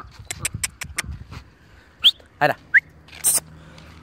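A small dog giving a few brief high whines and squeaks, short rising notes a little past the middle, after a run of light clicks.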